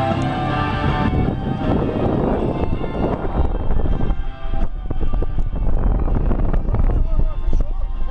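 Wind and road rumble from a moving car, which grows stronger and lower about four and a half seconds in, mixed with music playing.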